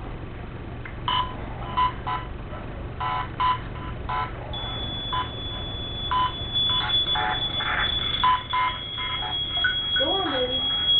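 A ghost-box app on a handheld tablet plays choppy electronic bursts, a rapid irregular string of short beep-like fragments. About halfway through, a steady high tone comes in under them.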